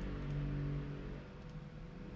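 A steady low hum that fades slightly after about a second.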